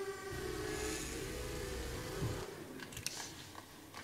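Small quadcopter drone's propellers humming, a steady pitched whine that rises a little in pitch and fades after about two and a half seconds. It is heard from a film played over an auditorium's loudspeakers.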